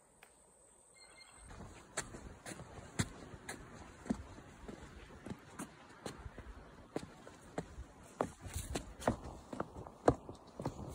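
Footsteps of a hiker walking along wooden plank walkways over the forest floor, about two steps a second, each step a short knock over a low rustle of brush; the steps begin after a quiet second or so.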